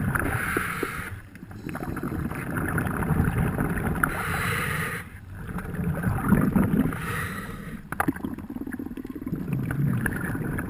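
Scuba diver breathing underwater through a regulator: rushing, bubbling exhalations and hissing inhalations that swell and fade in a few breath cycles, with short lulls between them.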